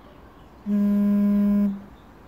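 A loud, steady, low buzz lasting about a second, a single flat pitch with overtones, starting and stopping abruptly.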